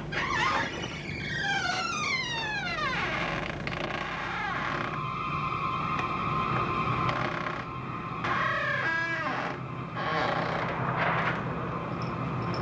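Eerie synthesizer music: several falling pitch sweeps in the first few seconds, then high held tones, and a short warbling glide about nine seconds in.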